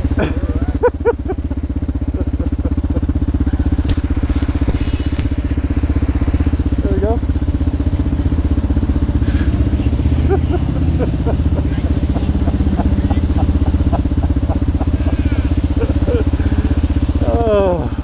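Motorcycle engine idling steadily while the bike stands still.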